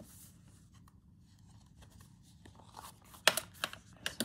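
Soft handling of a bundle of folded paper pages, then a sudden short, loud rustle of the paper about three seconds in as the pages are opened out and pressed flat.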